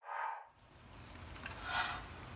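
Outdoor ambience picked up by a handheld phone: a steady low rumble on the microphone, with a brief burst of noise at the very start and a louder short scrape near the end.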